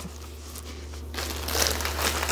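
Plastic wrapping crinkling and rustling as a rolled diamond-painting canvas is handled, starting a little past halfway. A steady low hum runs underneath.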